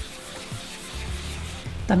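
Wet 600-grit sandpaper being rubbed by hand over a plastic car headlight lens, a soft, steady hiss of abrasion during wet sanding to strip the yellowed factory coating. Quiet background music runs underneath.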